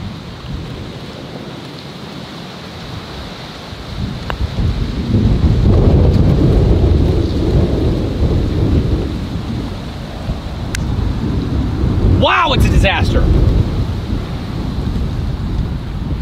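Wind buffeting the microphone: a loud low rumble that builds about four seconds in, then swells and eases.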